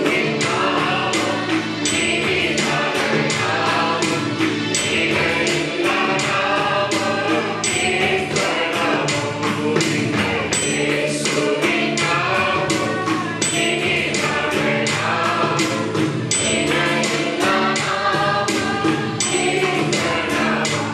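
A group of men singing a gospel worship song together into microphones, over instrumental backing with a steady beat.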